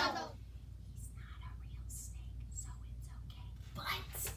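Faint whispering and hushed voices over a low steady hum, after a loud voice breaks off at the very start; a short louder voice sound comes just before the end.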